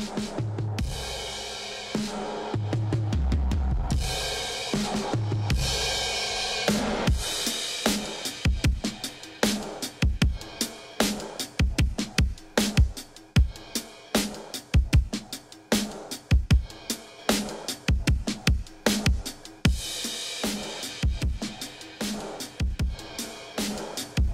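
Drum-kit recording played back as a stereo drum bus, heavily compressed ('slammed') through a pair of stereo-linked Eventide Omnipressor 2830*Au compressors. Three big low booms with a long cymbal wash open it, then a fast, busy beat of sharp hits takes over from about seven seconds in.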